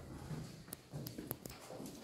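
Faint footsteps: a few light, irregular taps and clicks on a hard floor.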